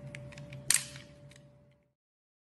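A few light ticks and one sharp, crackly click about two-thirds of a second in, from a blade cutting and handling a clear piece with blue pom-poms set in it, over a faint steady hum. The sound fades and cuts out shortly before the end.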